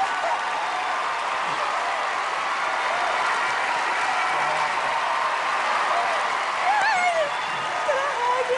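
Large studio audience applauding and cheering, a steady wash of clapping with scattered shouts over it and a louder shout about seven seconds in.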